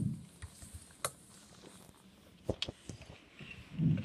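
A few light, sharp clicks of small toy cars being handled on a wooden tabletop: one about a second in, then a quick run of three about two and a half seconds in, with little else between.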